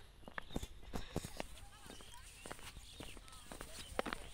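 Footsteps on a rough stone-paved path: a string of sharp, irregular taps, with faint voices in the background.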